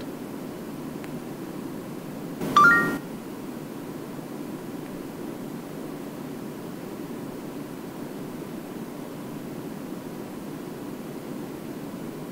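A short electronic chime of a few rising notes from the Samsung Galaxy S III's S-Voice assistant, about two and a half seconds in, as it stops listening and starts processing the spoken question. Steady faint hiss fills the rest of the time while the answer is awaited.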